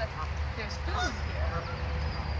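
A flock of Canada geese making several short honking calls, over a steady low rumble.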